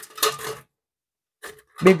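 A short scraping rub of a large ice cube being lifted against a metal ice bucket near the start, with a brief second scrape about one and a half seconds in.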